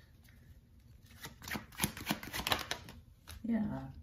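Tarot deck being shuffled by hand: a quick run of crisp card clicks lasting about two seconds, starting a second in.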